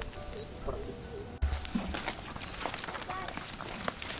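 Small twig fire crackling with scattered sharp pops, with short chirping bird calls over it and a dull low thump about a second and a half in.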